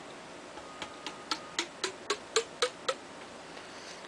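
Tack hammer tapping a stack of wooden dowel rod sections down a Finnish M39 rifle barrel, about four light taps a second for two seconds, each tap ringing with a short note. The taps drive a lubed soft lead ball through the bore to slug it and measure the bore diameter.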